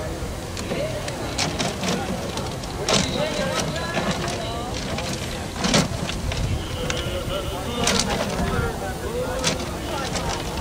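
Clear acrylic raffle drum turned by hand, paper tickets sliding and tumbling inside, with sharp knocks and clatters of the drum every second or so; the loudest knock comes a little past the middle.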